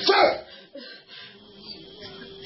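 A single short, loud yelp at the very start, sweeping down in pitch, followed by a faint steady hum.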